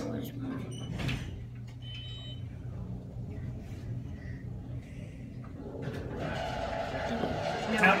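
Steady low hum inside a descending elevator car, with a knock about a second in and a short electronic beep about two seconds in. Voices come in faintly near the end.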